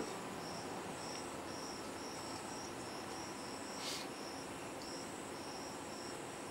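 Crickets chirping steadily in short high chirps, about two a second, over a faint hiss. A brief soft rustle comes about four seconds in.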